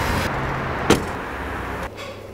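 A Range Rover driving past on the street: steady tyre and engine noise with a low rumble, and a single sharp click about halfway through. It cuts off abruptly near the end.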